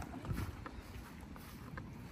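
Wind rumbling unevenly on the microphone over faint open-air background, with a few soft ticks.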